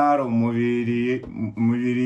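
A man's voice drawing out two long, held syllables in a sing-song, chant-like way, the second beginning about a second and a half in.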